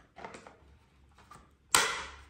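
Battery snapped into the belt-mounted blower unit of a powered-air welding helmet: light handling rustle, then one sharp click near the end as it locks in and connects.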